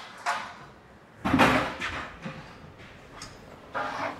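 Handling knocks and scrapes on a drywall job: a short click, then about a second in a louder scraping clunk that fades, and another brief scrape near the end.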